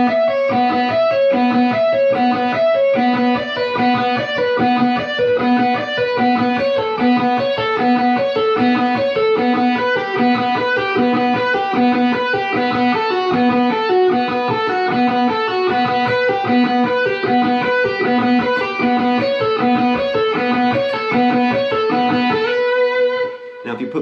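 Electric guitar, a Stratocaster, played through an amp: a fast picked melodic pattern in which a repeated open B string note alternates with pull-offs from fretted notes above it, the melody stepping down and back up the neck. It has a baroque, harpsichord-like sound. The phrase ends on one held, ringing note near the end.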